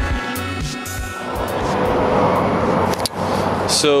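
Background music fading out in the first second, then a motorcycle at road speed with wind rush, the noise swelling for about two seconds before cutting off suddenly about three seconds in.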